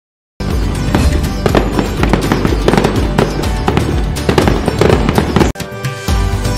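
Firework and firecracker bangs and crackling over music, starting suddenly about half a second in. The bangs stop shortly before the end, leaving the music alone.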